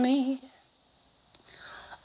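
A woman's unaccompanied sung note wavers and trails off in the first half-second. After a short near-silence comes a small mouth click, then a soft, breathy intake of breath near the end, as she readies the next phrase.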